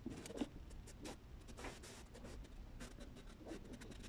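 Faint scratching and scattered light clicks from handling close to the microphone.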